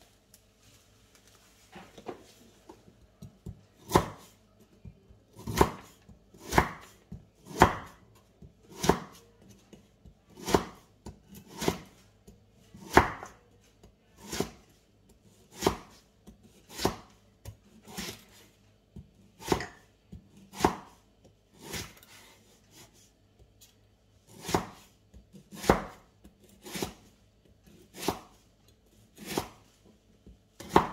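Cleaver slicing lemongrass stalks on a wooden chopping board: a steady series of sharp knocks of the blade on the board, about one a second, starting some four seconds in after a few faint taps.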